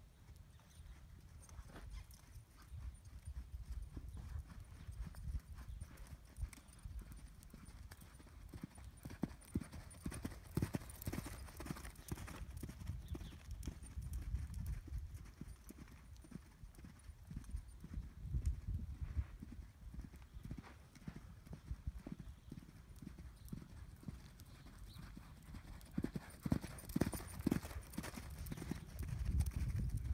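Hoofbeats of a ridden horse cantering on sand arena footing, growing louder and fainter as it circles past.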